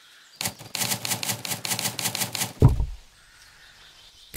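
Typewriter-style keystroke clicks, a rapid even run of about seven a second for two seconds, then a loud low thump that sweeps down in pitch.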